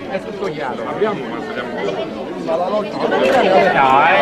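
Several people in a small crowd talking at once, their voices overlapping into indistinct chatter that grows louder near the end.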